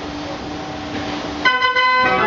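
The De Koenigsberg Dutch street organ (draaiorgel) starts playing: about one and a half seconds in, its pipes come in abruptly with several notes sounding together. Before that there is only a steady low hum with a faint hiss.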